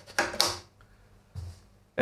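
An XLR cable connector being handled and pushed into an input socket on a rack-mounted splitter's panel: short scraping clicks, then a single dull thump about one and a half seconds in.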